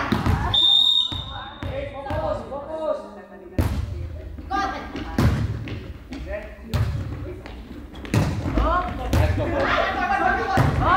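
A referee's whistle blows briefly, then a volleyball rally: several sharp hand-on-ball hits echo in a large sports hall, with players' voices calling out near the end.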